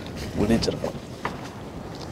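A brief voice about half a second in, over steady wind noise on the microphone, with a faint click or two.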